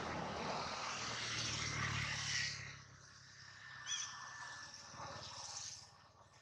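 Engine noise with a low hum for about the first two and a half seconds, then dropping away sharply. A short high chirp comes about four seconds in, over a faint steady high tone.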